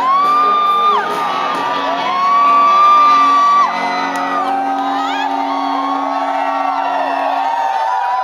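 Live rock band ending a song: Stratocaster-style electric guitar through Marshall amplifiers holding long high notes that bend down, over a sustained ringing chord that stops near the end. The audience whoops and cheers, most by the end.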